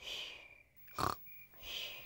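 Cartoon piglet snoring in its sleep: soft snores, with a sharper snore about a second in.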